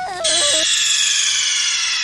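A loud, shrill, high-pitched squeal that comes in about a quarter second in and slowly falls in pitch, laid over the tail of a short wavering cry.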